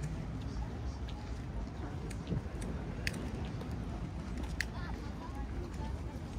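Indistinct chatter of passers-by on a busy seaside promenade over a steady low rumble, with a few sharp clicks scattered through.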